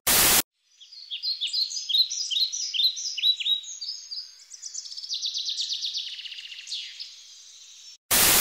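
A brief burst of TV-style static, then birds chirping and singing: many short, high, falling notes, with a quick run of repeated notes in the second half.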